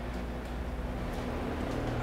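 Steady low room hum in a quiet indoor room, with a faint steady tone over it and no distinct events.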